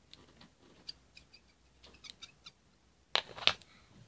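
Small scissors being handled and clicked open and shut: a few faint ticks, then two sharper clicks close together near the end.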